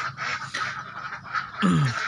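A flock of Pekin ducklings peeping and calling, many short overlapping calls. A man's voice comes in near the end.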